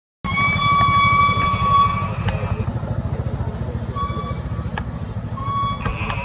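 A horn sounding three times at one steady pitch, first a long toot and then two short ones, over a low steady engine rumble.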